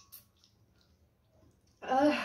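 A single short click right at the start, then near quiet, until a woman's voice breaks in loudly near the end.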